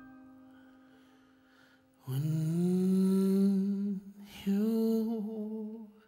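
A keyboard chord fades away, then a man's voice holds two long wordless notes, the second after a short break, over the keyboard.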